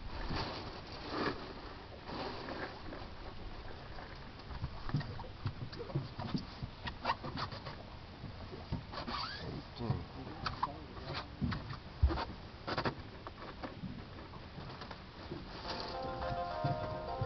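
Hybrid striped bass being handled and shifted on a boat deck: scattered knocks and slaps, with a louder thump about twelve seconds in.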